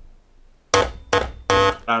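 Vintage Soviet toy synthesizer playing three short, buzzy notes at the same pitch, a bit over a third of a second apart, each starting bright and quickly fading.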